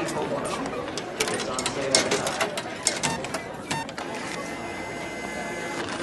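Indistinct chatter of people in a hallway, with scattered sharp clicks and knocks, and a faint steady mechanical whir near the end.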